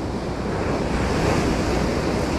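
Ocean surf washing on the beach with wind buffeting the microphone: a steady rushing noise.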